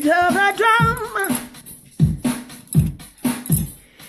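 A person's voice, unaccompanied: a short sung vocal phrase, then beatboxing, a string of separate mouth-made drum hits with short gaps between them.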